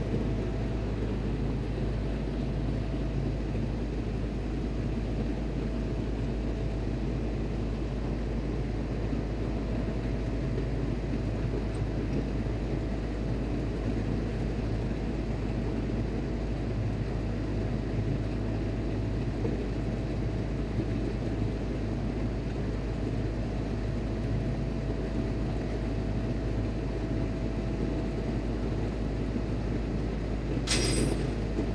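Steady drone of shipboard machinery, heaviest in the low range, with a faint constant whine running through it.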